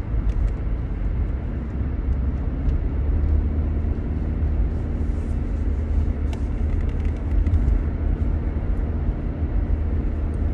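Steady low rumble of road and engine noise inside the cabin of a moving car. A faint steady hum joins in about three and a half seconds in.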